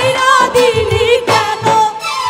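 A woman singing a Bengali folk song live into a microphone, with a dhol drum beating steadily underneath.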